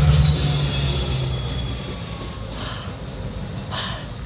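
GP38 diesel locomotive moving along the track: a low rumble that fades steadily, with a faint high wheel squeal over the first second or so.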